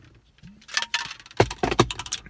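A person drinking a protein shake from a plastic shaker bottle, with swallowing sounds, then a quick run of clicks and knocks near the end as the bottle is handled and lowered.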